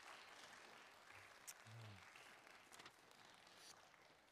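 Faint applause from an audience, a steady even clapping.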